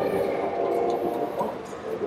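Ambience of a large indoor exhibition hall: a general murmur of visitors with a few faint steady tones underneath, growing quieter in the second half.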